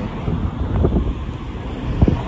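Wind buffeting a phone's microphone outdoors, an uneven low rumble of noise.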